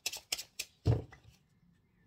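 Tarot cards being shuffled by hand: a quick run of card flicks for about a second, with a dull thump near the middle, then quiet.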